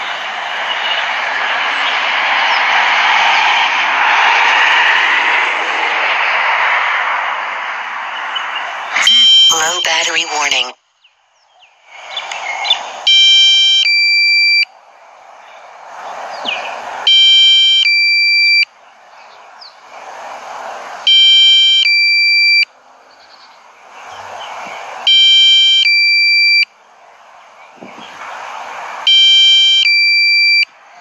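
A steady rushing noise, then from about thirteen seconds in a DJI Mavic Pro low-battery warning: a group of high electronic beeps lasting about a second and a half, repeating every four seconds. It signals that the drone's battery has fallen to the warning level in flight.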